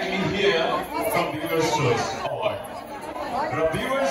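A man talking into a handheld microphone over a hall's loudspeakers, with audience chatter around him.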